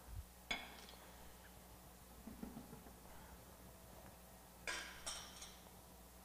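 Light clinks of an ingredient container against the rim of a stainless-steel mixer bowl as ingredients are tipped in: one about half a second in, then two in quick succession near the end, each ringing briefly.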